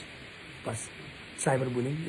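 A man talking, with a pause of about a second and a half before he speaks again, over a steady background hiss.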